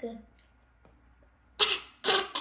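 A boy's short, loud cough about one and a half seconds in, with another starting at the very end, after a near-quiet pause. The coughs act out getting sick from breathing polluted air.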